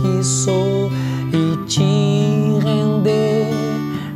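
Steel-string acoustic guitar fingerpicked in a slow arpeggio, holding a C chord and moving to D, with a fresh bass note struck about two seconds in.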